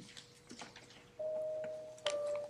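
A grand piano's first note, struck about a second in and left to ring and fade, after a few faint clicks.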